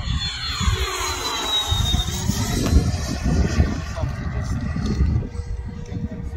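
Freewing Avanti S 80mm electric ducted-fan jet flying past, its high fan whine falling in pitch as it goes by over the first couple of seconds. An uneven low rumble runs underneath.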